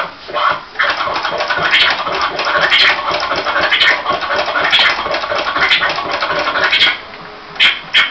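Turntable scratching: a vinyl record pushed back and forth by hand, the sweeps cut up by quick crossfader moves on the DJ mixer. The scratches come as a run of short rising and falling sweeps, with a brief pause near the end.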